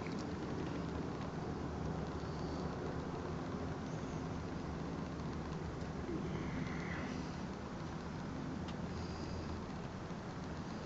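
A steady, quiet low hum of background noise, with a few faint, brief high chirps.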